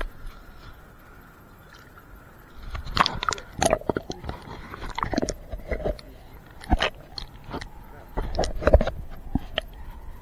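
Muffled underwater sound from a camera held under the lake surface: quiet for the first couple of seconds, then irregular clicks, knocks and gurgles of water and handling close to the microphone.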